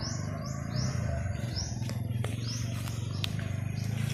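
A bird calling with a quick series of repeated high chirps, about three a second, fading out about three seconds in. A few light clicks come near the end.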